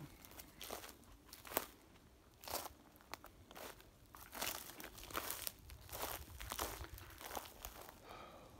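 Footsteps crunching over dry pine needles and twigs on a forest floor, in an irregular series of crunches with a sharp crack about a second and a half in.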